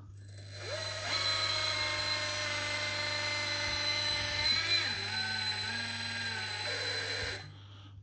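Electric hydraulic pump of an RC teleloader running with a steady high whine while the boom is raised. Its pitch wavers and drops about halfway, and it stops near the end as the boom reaches the top. The pump is mixed to switch on only while the boom is being moved and to shut off as soon as it stops.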